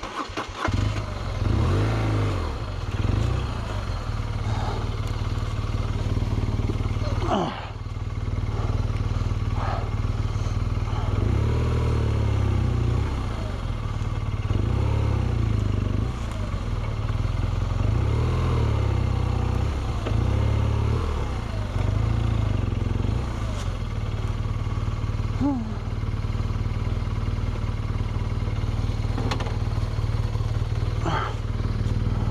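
BMW R1200GS boxer-twin motorcycle engine starting about half a second in, then running steadily at low revs as the bike is ridden slowly.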